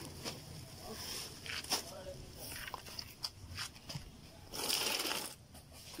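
Potting soil poured from a plastic bag into a planter: scattered crackles of the bag and falling soil, with one louder rush of soil lasting under a second near the end.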